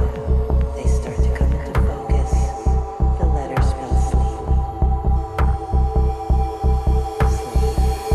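Progressive psytrance: a steady pulsing kick and bass under a sustained synth drone. A second, higher synth note comes in about two seconds in, with a few sparse cymbal hits.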